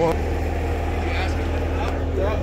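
Idling semi-truck engine: a steady low drone that grows a little louder just after the start.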